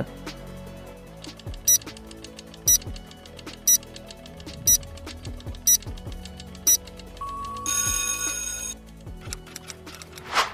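Countdown-timer sound effect: a clock tick once a second, six times, then an alarm bell ringing for about a second, over quiet background music.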